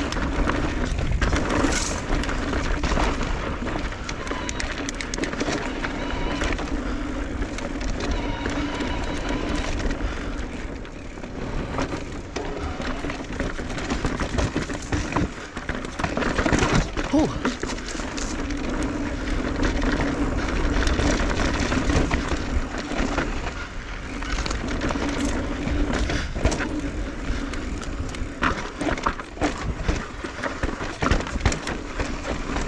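Electric mountain bike ridden over dry, rocky singletrack: tyres crunching over dirt and stones and the bike rattling and knocking over bumps, under a steady low rumble. A hum runs beneath it and swells in stretches.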